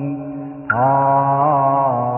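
Slow Buddhist chant in long held notes that glide gently in pitch; one note fades and a new one starts sharply about two-thirds of a second in.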